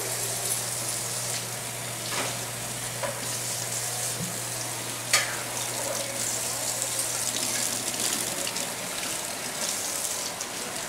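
Food frying in a pot on a gas stove with a steady sizzle, while a kitchen tap runs over fruit being rinsed at the sink. A few sharp knocks of utensils come through, the loudest about five seconds in.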